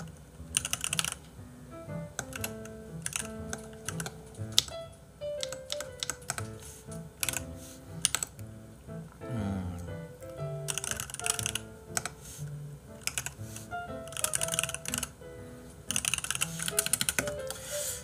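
Computer keyboard being typed on in bursts of rapid keystrokes, over soft background music with a slow, stepping melody.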